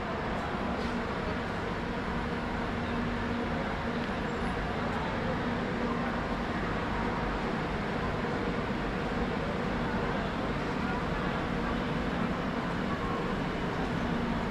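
Railway station platform ambience: a steady machine hum with a faint murmur of voices in the background.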